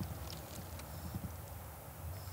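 Faint, irregular footsteps crunching on dry leaf litter, with a few soft ticks over a low steady rumble.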